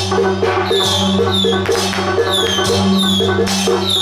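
Temple procession music led by percussion over a steady low drone, with short falling high metallic notes repeating a little under a second apart.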